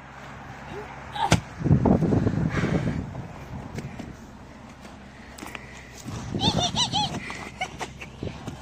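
A pumpkin hurled down onto a concrete walkway, smashing with a sharp crack about a second in, followed by a splattering crunch as it breaks apart.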